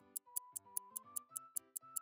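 A 'thinking time' jingle: a simple tune over a clock ticking about five times a second, whose melody steps up in pitch about a second in. It is the cue to wait and guess the answer.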